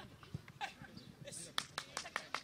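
Faint voices of players and coaches calling out on a football training pitch, with several sharp knocks close together near the end.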